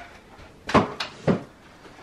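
Three short plastic clunks of a stroller seat being handled and unclipped from its frame, close together about a second in.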